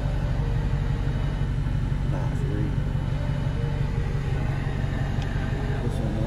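A V8 car engine idling at a standstill, heard from inside the cabin as a steady low rumble.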